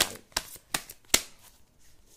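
A tarot deck being shuffled by hand: four crisp snaps of cards about 0.4 s apart, stopping about halfway through.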